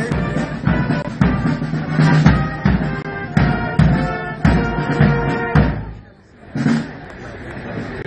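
Marching brass band playing a march in sustained chords over a bass drum beating about twice a second. The music breaks off about six seconds in.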